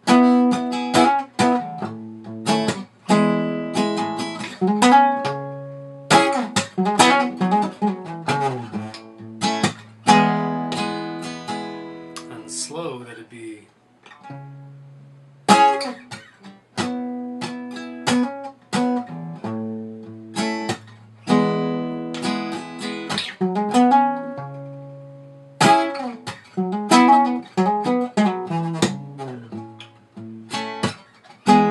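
Acoustic guitar played fingerstyle: single notes and two-note chords with hammer-ons and slides, punctuated by percussive thumb slaps on the bass strings. The playing stops for a moment about halfway through, then starts again.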